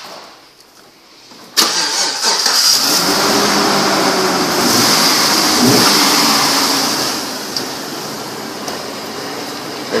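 The 2005 Trailblazer EXT's 5.3-litre V8 starts about a second and a half in and runs, louder for the first few seconds, then settles to a steadier, quieter idle around seven seconds in.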